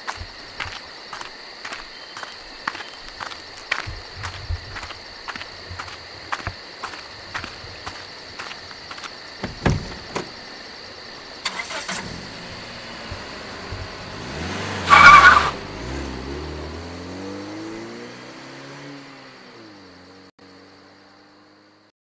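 A drift trike rolls past close by. It is loudest in a short burst about fifteen seconds in, and its pitch dips and then rises as it goes by, before it fades away. Before that there are light, regular clicks, about three a second.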